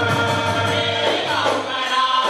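A group of men singing a Goan ghumat aarti in chorus, with held notes that change pitch together, accompanied by ghumat clay-pot drums and jingling hand percussion keeping a steady rhythm.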